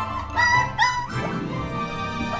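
Two short high-pitched cries from a five-week-old Akita puppy, about half a second apart, over background music.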